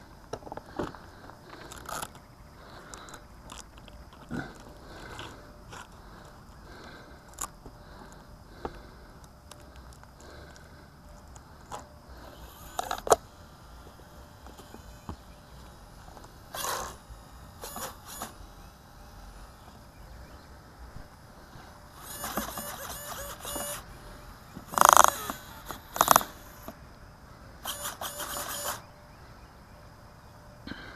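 Handling noises from a foam flying wing being picked up, turned over and set down on a wooden table: scattered knocks and scrapes, a sharp knock about halfway through, stretches of rustling and scraping near the end, and two loud knocks between them.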